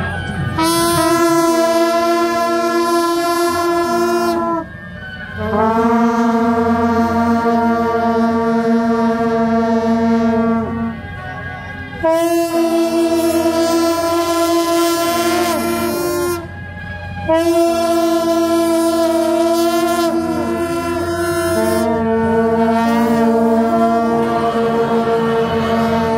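A group of long brass horns sounding long held chords, several notes at once. There are about five blasts, each held four to five seconds, with short breaks between them.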